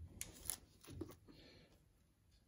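Faint small clicks and rustling of fingers handling a Nikon D3 camera body around its lens mount.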